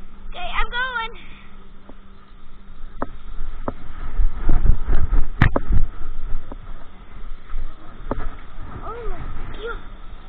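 Handling noise of a moving camera: a low rumble with scattered knocks, loudest in the middle with one sharp click. Short wordless voice sounds come near the start and again near the end.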